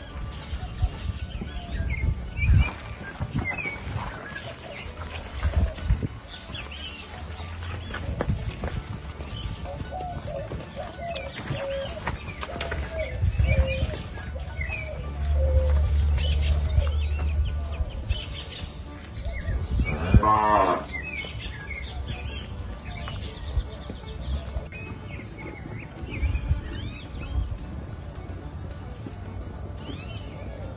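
Gyr cattle mooing in a pen, with one loud, long moo about two-thirds of the way through and softer calls before it.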